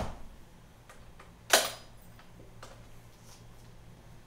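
Clicks and knocks of handling noise on a handheld camera: one sharp click about a second and a half in, with a few faint ticks around it.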